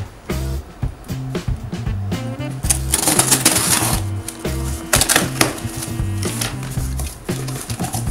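Background music with a steady, repeating bass line, over scissors cutting the packing tape on a cardboard box and the box's flaps being pulled open, heard as short scraping, rustling bursts, the loudest about three and five seconds in.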